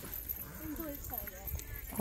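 Faint background voices talking, in short broken phrases, over a low steady rumble.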